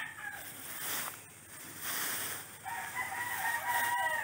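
Rooster crowing: the end of one held crow fades out at the start, and a second long, steady crow begins near the end, with a soft hiss between.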